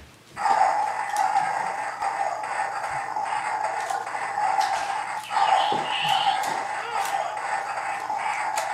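Battery-powered light-up toy shark playing electronic sound effects through its small built-in speaker: a steady sound that starts abruptly about half a second in and breaks off briefly around five seconds in.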